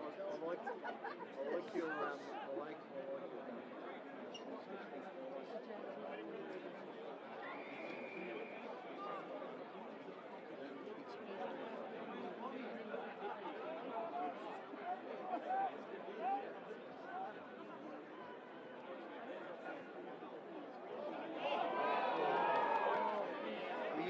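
Indistinct voices of spectators and players chattering and calling out across the football ground, with no one voice clear, growing louder near the end.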